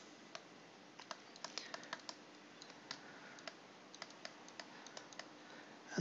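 Faint, irregular clicks of a pen stylus tapping on a tablet screen while words are handwritten, several small clusters a second apart.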